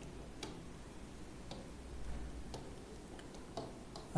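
Faint ticks, four of them about a second apart, over low room hum.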